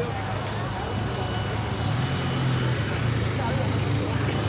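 A vehicle engine running steadily with a low hum, slightly stronger about halfway through, under crowd chatter.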